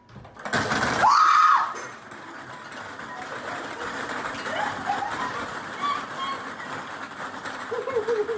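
A woman shrieks once, about a second in, over a loud clatter of small plastic balls spilling out of a kitchen cabinet onto the counter. Scattered laughter follows over steady background noise.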